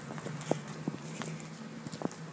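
Footsteps on hard outdoor ground, a few irregular footfalls, over a steady low hum.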